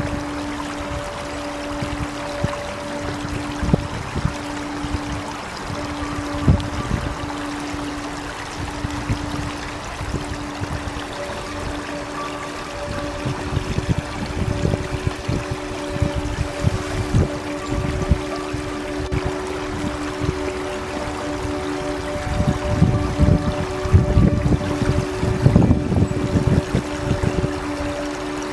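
Flowing stream water with soft, slow relaxation music of long held notes over it. The water's rush grows busier and louder in the second half.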